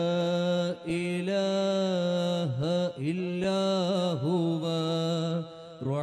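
A solo male voice chanting unaccompanied in Arabic: a slow, melismatic recitation of the names of God ("…alladhi la ilaha illa huwa, ar-Rahman ar-Rahim…"), with long held notes and short breaths between phrases.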